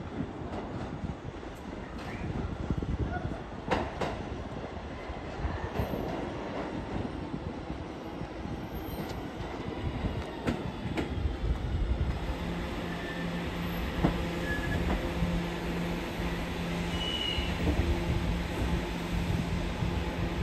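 An R211A subway train pulls into the station on the far track, its wheels rumbling and clicking over the rail joints, growing louder as it nears. A steady low hum joins in a little past halfway as the train slows.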